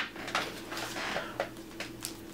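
Faint rustle and a few light clicks of a plastic-wrapped wax melt being picked up and handled, over a low steady room hum.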